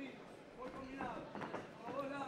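Faint voices calling out in short bursts over low hall noise, with no clear blows or thuds.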